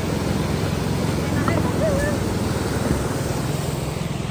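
Water rushing steadily over a small concrete weir and down a channel, a continuous full roar.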